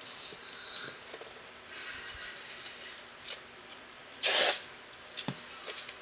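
Tape being peeled off a painted canvas: faint rustling of handling, then one short ripping sound about four seconds in, followed by a light click as the canvas is handled.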